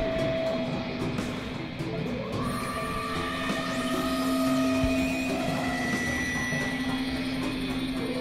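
Experimental electronic drone-and-noise music from synthesizers: several steady held tones that shift and overlap over a dense, grainy noise bed. A low drone grows strongest after the midpoint.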